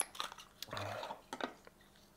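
Small plastic clicks and taps from handling a two-inch UHC-S filter in its plastic case, a handful of sharp clicks in the first second and a half.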